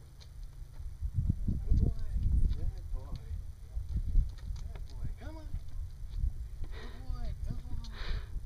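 Gusts of wind rumbling on the microphone, loudest between about one and three seconds in, with faint voices talking.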